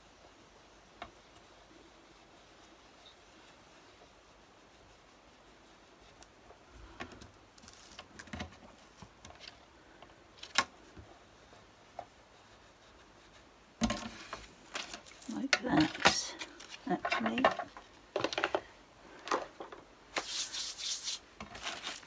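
Faint rubbing of a foam ink-blending tool dabbed over a plastic stencil on card, with a few small clicks. In the last third, louder rustling, scraping and clatter as the plastic stencil is peeled off and the card is moved on the cutting mat.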